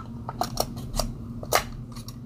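A handful of small plastic clicks and taps as a battery is pushed into a GoPro Hero 9 Black's battery compartment, the loudest click about one and a half seconds in.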